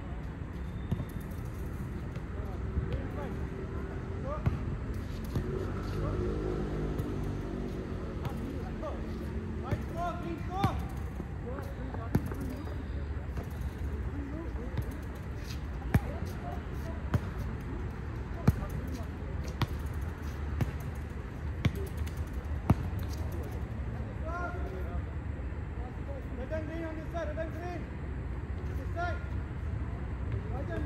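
Futsal ball being kicked and bouncing on a hard court, a sharp thud every second or two, over a steady low background rumble. Distant players' voices can be heard.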